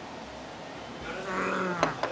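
A man's held closed-mouth "mmm" of enjoyment with his mouth full, starting about a second in and lasting about half a second, ending with a short click.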